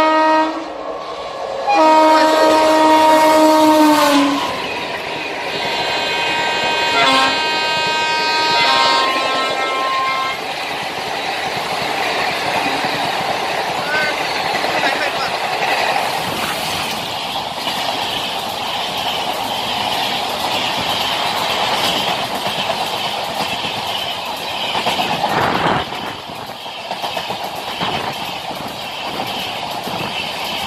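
Indian Railways WAP-4 electric locomotive sounding its horn in several long blasts, the pitch sagging as the second blast ends. After about ten seconds the express runs through at speed, with a steady rumble of coaches and wheels clicking over the rail joints, and a single loud knock a few seconds before the end.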